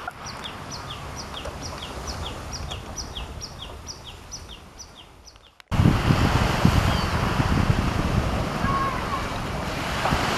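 A steady run of short, high falling chirps, about three a second, over a low hum. About halfway through it cuts suddenly to loud wind buffeting the microphone, with surf washing on a beach.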